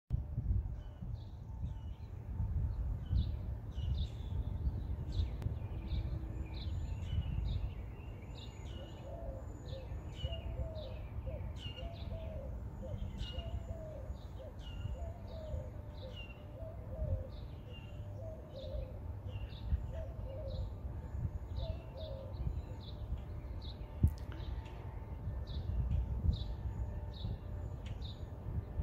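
A dove cooing in a steady series of short, low notes, starting about a third of the way in and stopping a few seconds before the end. Other small birds chirp throughout, over a steady low rumble.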